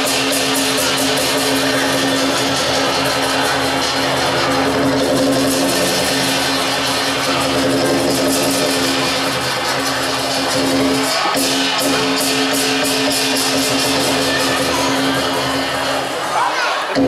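Lion dance percussion: a drum and hand cymbals played in a fast, steady rhythm of sharp clashes, over a steady low tone.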